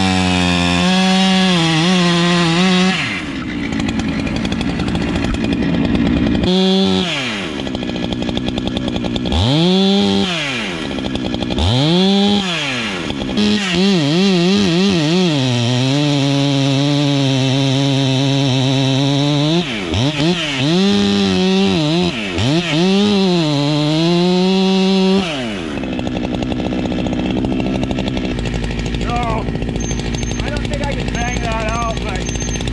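Large two-stroke chainsaw with a long bar cutting the face notch into a 26-inch Douglas fir. The engine revs up and falls back again and again as the saw goes into and out of the cut, then holds a steady pitch under load for about ten seconds before dropping away near the end.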